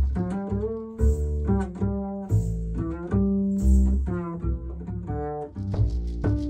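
Upright double bass played pizzicato, a line of plucked notes moving up and down in pitch, with light drum and cymbal strokes here and there.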